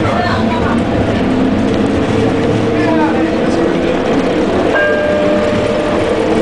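Detroit People Mover Bombardier Innovia Metro Mark 1 train running along its guideway, heard from inside the car: a steady running rumble with a motor hum that rises gently in pitch. Near the end a steady higher tone comes in suddenly.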